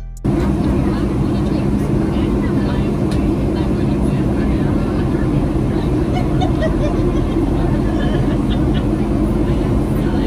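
Steady airliner cabin noise in flight: the even rumble of engines and airflow with a steady low hum.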